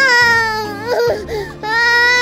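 Cartoon baby crying: a long wail that falls in pitch, a short broken sob, then a second long wail starting near the end.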